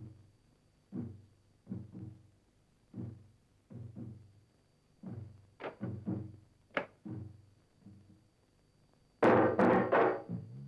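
Film background score: single pitched drum beats, about one a second and sometimes two in quick succession, each dying away. About nine seconds in, a much louder burst of music with drums comes in.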